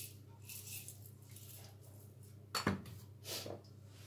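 Hand-twisted spice mill grinding seasoning onto raw fish fillets in short crunchy bursts about a second apart, with one sharper knock about two and a half seconds in.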